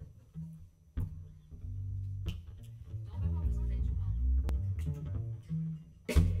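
Upright double bass played pizzicato, a line of separate plucked low notes, with a few sharp clicks over it.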